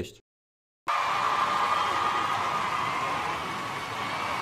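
A steady rushing noise that starts suddenly about a second in, after a moment of silence, and slowly fades.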